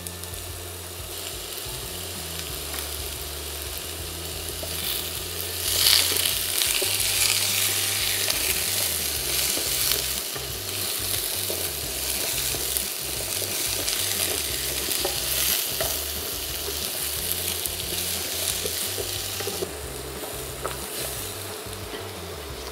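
Cubes of butternut squash sizzling in butter and oil in a non-stick frying pan while a spatula stirs them. The sizzle is steady and gets louder from about six seconds in until near the end.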